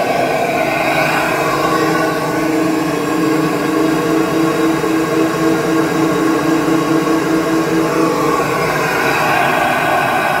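SuperFlow flow bench blower running at full draw, pulling air through a Holley 850 carburetor topped with a 5-inch K&N air filter, with a loud, steady rush of air. A steady low tone rides on it, turns into a quick pulse of about three or four beats a second from about halfway through, and fades near the end.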